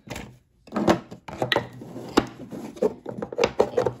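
Hands packing small stationery (sticky-note pads, page markers, sticker sheets) back into a small lidded box and closing the lid. From about a second in, an irregular run of sharp clicks, knocks and rustles.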